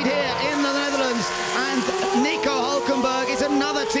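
Two A1GP single-seater race cars with V8 engines running at high revs as they pass at speed, their pitch rising over the second half as they accelerate.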